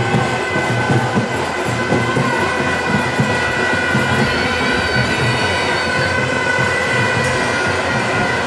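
Loud din of a large festival procession crowd, mixed with music and long steady high tones held for several seconds.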